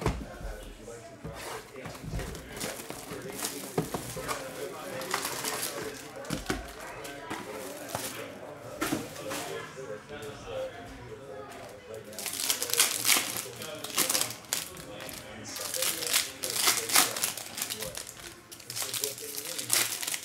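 Cardboard hobby box being opened and foil trading-card packs handled: scattered rustles and taps, then dense foil-wrapper crinkling and tearing from a little past the middle as a pack is opened.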